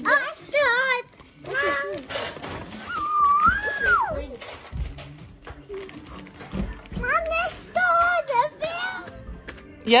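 A young child's high voice making wordless, sing-song sounds, with a long gliding note partway through.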